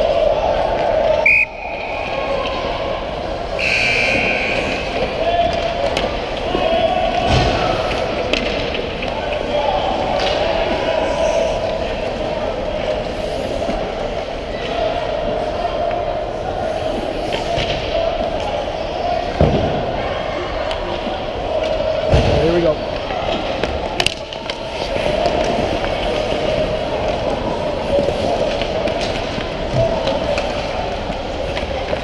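Ice hockey play on the rink: skates on ice and sticks and puck clacking, with a few sharp knocks spread through, over steady background noise and distant voices.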